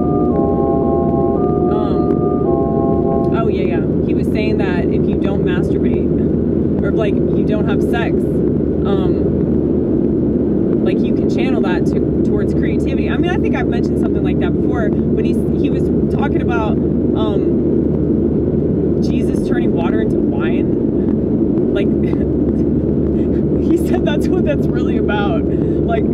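Steady road and engine drone heard inside a moving car's cabin, with a woman's voice talking over it from about four seconds in. A few short electronic organ-like tones sound in the first three seconds.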